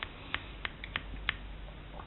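Fingertip taps on a crystal earphone: about six sharp clicks, unevenly spaced, over the first second and a half, over a faint hiss.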